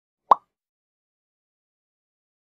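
A single short pop sound effect about a third of a second in, the kind of edit cue that marks a new text slide appearing.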